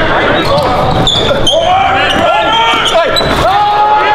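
Basketball dribbled on a hardwood gym court, with the voices of players and spectators echoing in a large gym.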